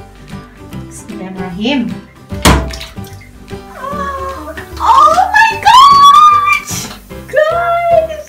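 A bath bomb dropped into a filled bathtub lands with a single splash about two and a half seconds in. This sits over background music with a singing voice, which is loudest in the second half.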